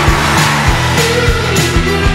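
Upbeat background music with a steady drum beat, about three hits a second, under a sustained melody line.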